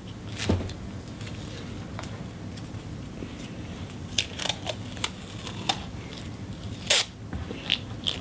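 Handling noises from craft materials: scattered small clicks and rustles as a roll of masking tape and small parts are handled. Near the end comes a sharper, short rip as a strip of masking tape is pulled off the roll.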